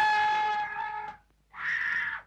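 A man's loud, long yell held at one pitch for about a second and a half, then a second, shorter cry near the end.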